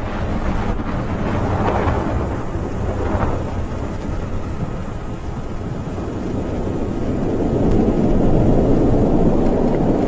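Falcon 9 first stage's nine Merlin engines heard from the ground during ascent shortly after liftoff: a steady deep rumble that grows louder over the last few seconds.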